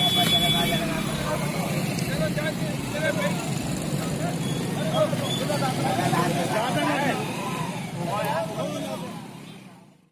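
Several men talking at once outdoors, overlapping indistinct voices, over steady road-traffic noise; the sound fades out in the last second.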